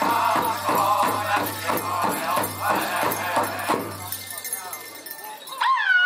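Powwow big drum beaten in a steady, quick rhythm under a drum group's singing. The drumming and singing die away about four seconds in, and a high voice call glides down near the end.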